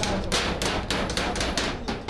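Claw hammer driving a nail into a door frame: quick repeated blows, about five a second, that stop near the end.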